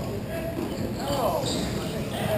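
Inline hockey game noise in a large echoing rink: players' voices calling, one shout about a second in, over knocks of sticks and puck on the plastic tile floor.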